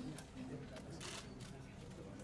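Camera shutters of press photographers clicking, several clicks a second, over a low murmur of voices in the room.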